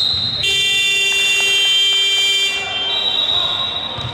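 Gymnasium scoreboard buzzer sounding one steady, harsh tone for about two seconds as the game clock runs out to zero, signalling the end of the basketball game.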